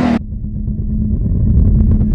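Engine rumble sound effect for an animated rev-counter sequence, a low steady rumble that swells slightly in loudness, with a few faint ticks near the end. It comes in just after the voice and music cut off.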